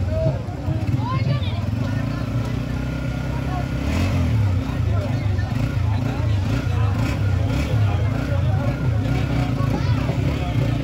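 Busy street-market ambience: a steady low engine rumble with people talking in the background.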